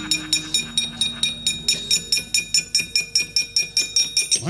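Wayang kulit kecrek, the hanging metal plates struck by the dalang, clashing in a fast even rhythm of about six jangling strikes a second, with faint held gamelan tones underneath.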